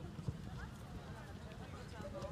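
Distant shouts and calls of soccer players across the pitch, over a steady low rumble of wind on the microphone. A single sharp thump comes about a third of a second in.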